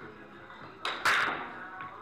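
A billiard cue tip clicks on the cue ball, then about a fifth of a second later a louder clack of ball on ball follows, over background music.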